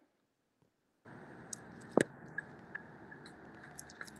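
Handling noise from a stone-bead bracelet being moved close to the microphone: several light clicks and one sharper click about two seconds in. After about a second of silence, a faint steady hiss comes in underneath.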